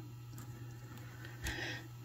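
Faint handling sounds of jewelry pliers and beaded strands after a jump ring is closed, with one short click about one and a half seconds in.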